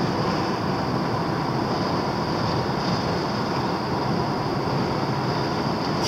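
Steady road and engine noise heard from inside the cabin of a moving car.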